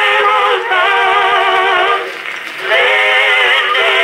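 Edison Red Gem Model D cylinder phonograph playing a two-minute wax cylinder of a vocal quartet singing in close harmony, heard through its horn with a thin, narrow, boxy tone lacking bass and treble. The voices drop back briefly about halfway through before the next phrase.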